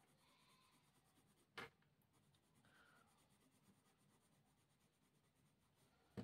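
Very faint strokes of a soft 10B graphite pencil shading on paper, close to silence, with a single short tick about a second and a half in.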